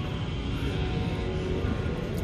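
Background music playing steadily, under a low hum of store room noise.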